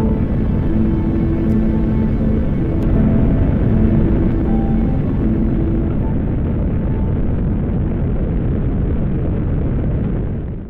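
Steady, loud roar of Saturn V rocket engines firing, with held notes of background music over it for roughly the first half.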